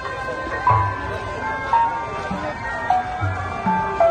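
Music: a slow melody of held notes over deep drum beats that fall about every two to three seconds.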